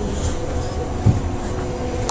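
Cabin noise aboard a moving San Francisco Muni transit vehicle: a steady low running rumble with a constant drive whine, and a single knock about a second in.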